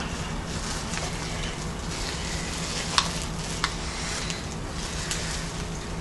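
Light rustling and crinkling of gift wrapping and a string-tied paper card being handled, with a few soft clicks, over a steady hiss.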